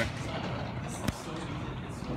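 A golf club head striking a teed ball: one sharp click about a second in, over steady background noise.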